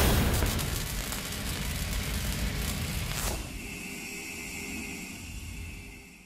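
Logo-sting sound effect: a sudden boom with a long rumbling decay, a falling whoosh about three seconds in, then a fading ringing tone that cuts off at the end.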